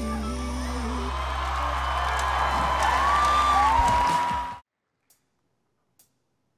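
A male singer ends on a held, wavering note over a live band, then audience cheering and whistling swell louder. The sound cuts off abruptly about four and a half seconds in, leaving near silence with a few faint clicks.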